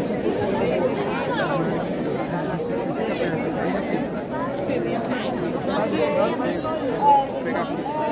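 Crowd chatter: many people talking at once in overlapping conversation, with one voice briefly louder about seven seconds in.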